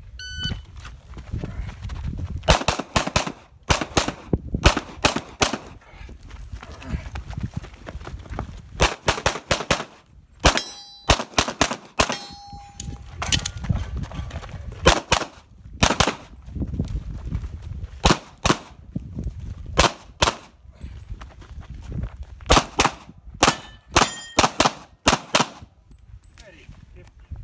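Electronic shot timer beeps, then a handgun fires a fast stage string: dozens of shots in quick clusters with short pauses while the shooter moves between positions, the last shots just before the end.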